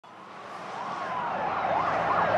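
An emergency vehicle siren fading in over a wash of street noise: a slow rising and falling wail that breaks into quicker up-and-down sweeps near the end.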